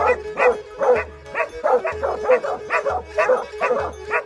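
Plott and Serbian Tricolor hounds baying at a brush pile, rapid barks overlapping at about three a second, with background music underneath.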